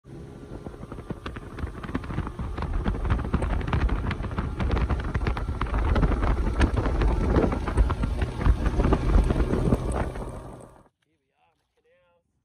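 Bass boat running fast across flat water: a steady outboard engine drone under heavy wind rush and buffeting on the microphone. It builds over the first few seconds and cuts off suddenly near the end.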